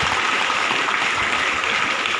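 Audience applause: many hands clapping in a steady round.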